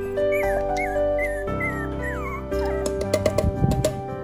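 Very young puppies whimpering for food over soft background music: several short, high, wavering cries, then a longer one falling in pitch. Near the end there is a quick run of sharp clicks.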